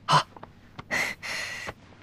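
A man's audible breath, about a second in: a quick intake followed by a breathy exhale lasting under a second, with a couple of faint clicks just before it.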